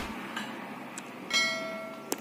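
Subscribe-button animation sound effect: two short mouse clicks, then a bell chime a little past halfway that rings on and slowly fades.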